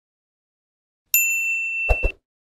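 Notification-bell 'ding' sound effect about a second in, one bright ringing tone that holds for most of a second, followed near the end by two quick clicks from the animated cursor.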